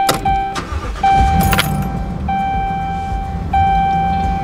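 A click as a car key turns in the ignition, with more clicks about a second and a half in. Under them runs a low vehicle rumble and a steady electronic tone that sounds in long stretches of about a second, broken by short gaps.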